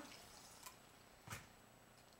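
Mostly near silence, with a faint tick and then one short splash about a second and a half in: a squirt of water from a bar soda gun into a martini glass full of ice.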